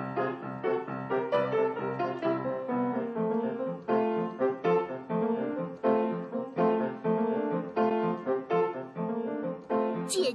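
Piano playing a tune, a steady run of struck notes and chords.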